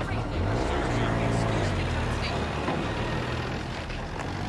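Military truck engine running, rising in pitch about half a second in as the truck pulls away, with the voices of a crowd.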